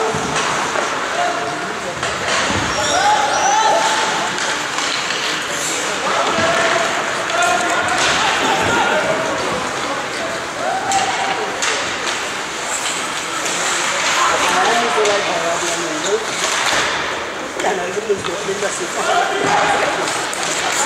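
Ice hockey rink during play: sharp knocks of sticks and puck on the ice and boards at scattered moments, over voices shouting across the rink.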